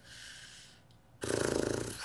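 A man's soft breathy exhale, then about a second in a louder, low, rattling wordless vocal sound as he thinks, heard through a Skype call.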